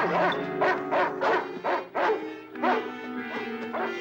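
Dramatic TV-drama background score: a run of short, sharply accented notes about twice a second over held notes, easing into sustained chords in the second half.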